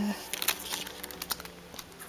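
Irregular small clicks and taps of paper stickers and notebook pages being handled.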